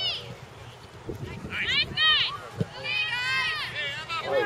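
High-pitched shouts of young girls playing soccer, coming in two bursts around two and three seconds in, with a couple of dull thumps.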